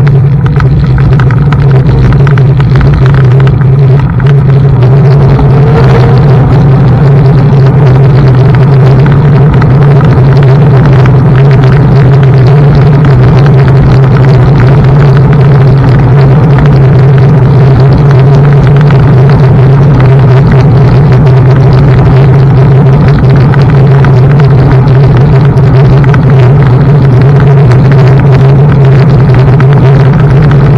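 Loud, steady low rumble of wind and road vibration on a camera mounted on a moving Xiaomi M365 Pro electric scooter.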